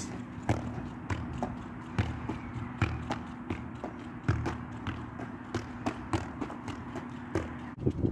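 A Gaelic football being kicked up over and over off the feet in keepie uppies, a dull thud of foot on ball about twice a second.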